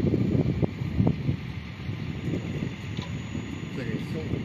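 Wind buffeting the microphone, a fluctuating low rumble.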